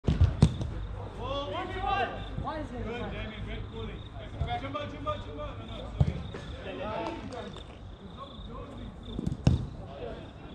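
Soccer ball being kicked and struck during five-a-side play on artificial turf: sharp thuds at the start, about six seconds in, and twice near the end, with players shouting between them.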